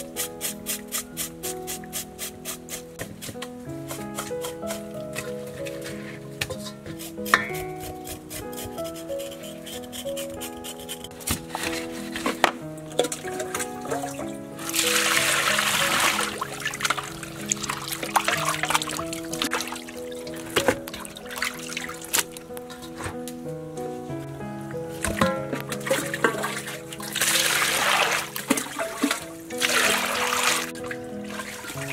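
Background music throughout, with water running from a tap and splashing over a raw pig's leg in a metal basin in two spells: about halfway through for a few seconds, and again near the end.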